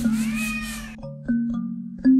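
A cat meows once: one drawn-out meow that rises and falls in the first half, over background music with struck notes.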